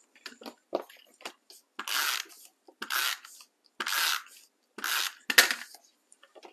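Tape runner laying adhesive on card stock: four rasping strokes about a second apart, with small clicks of paper handling and a sharp click near the end.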